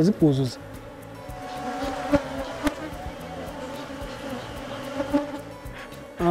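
Honeybees buzzing in a steady hum around their wooden box hive.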